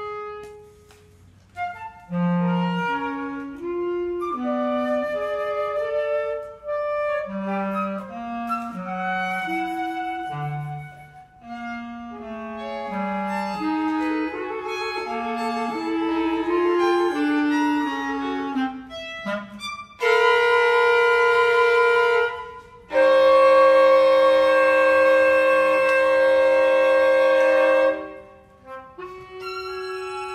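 Contemporary chamber music played live by flute, bass clarinet and violin: a run of short low notes stepping up and down, then two long, loud held notes near the end.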